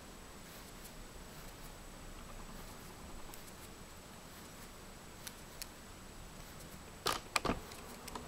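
Faint ticks of thin copper wire and round-nose pliers being handled as two wire strands are twisted together, over a low background hiss, with a quick cluster of three louder clicks about seven seconds in.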